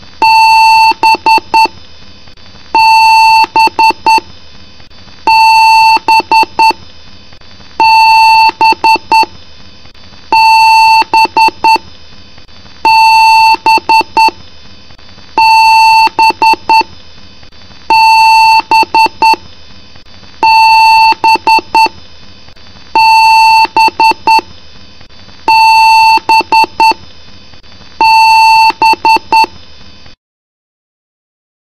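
PC motherboard speaker sounding a BIOS POST beep code during boot: one long beep followed by a few quick short beeps, the same high pitch, repeating about every two and a half seconds. A long-and-short pattern like this is an error code from the power-on self-test.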